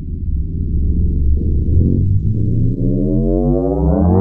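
A synthesizer riser: a low, buzzy electronic tone with many overtones that climbs in pitch, slowly at first and then steeply near the end.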